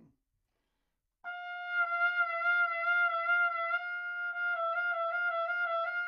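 Trumpet holding a long high tone from about a second in, its pitch dipping down in several short bends near the end: a half-step bend exercise for practising intervals.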